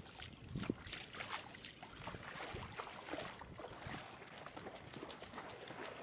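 Faint, irregular splashing of footsteps wading out through shallow water.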